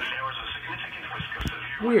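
NOAA Weather Radio broadcast voice playing from a weather radio's small speaker, with one knock about halfway through.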